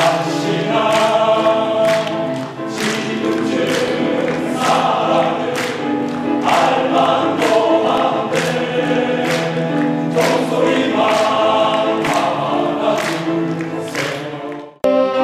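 Men's choir singing a song in harmony, accompanied by grand piano playing chords on a steady beat.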